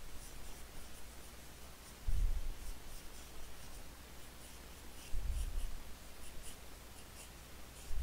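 Graphite pencil scratching on sketching paper in short shading strokes. Two dull low thumps come about two and five seconds in.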